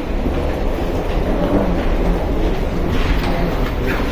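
Steady low mechanical rumble with hiss inside an airport jet bridge, with no distinct events.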